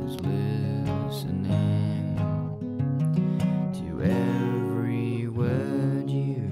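Acoustic guitar music, strummed and plucked, with two sweeping tones that rise and fall in the second half.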